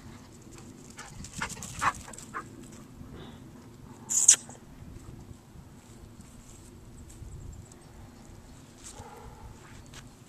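A young dog and two eight-week-old puppies at play, making short sharp dog sounds: a cluster of them a little over a second in, and one loud, high-pitched one about four seconds in.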